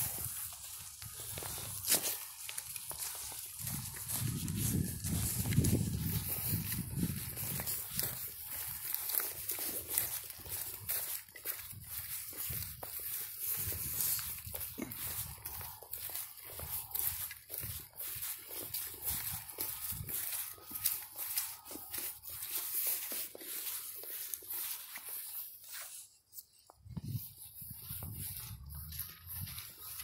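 Footsteps crunching and rustling through dry leaves and dead grass, with irregular crackles from the walking.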